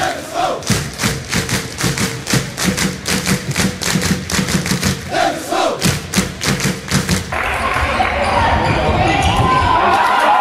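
Handball crowd in a sports hall: fans clap in a steady rhythm over drum beats, with some chanting. About seven seconds in this changes abruptly to loud crowd shouting and cheering.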